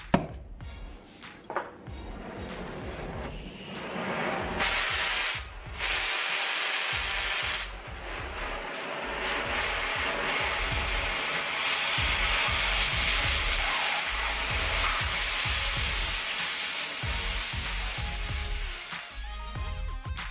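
Oxy-fuel cutting torch hissing as it cuts a bevel on the end of a thick-walled steel pipe. The hiss starts about four seconds in, breaks off twice briefly, then runs steady.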